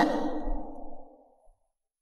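A woman's voiced sigh trailing off and fading out over about a second, followed by dead silence.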